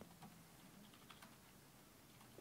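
Near silence: faint library background ambience, a soft room hiss with a few light, scattered ticks.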